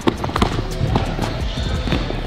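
A basketball dribbled on a hardwood gym floor, a few sharp bounces, over background music.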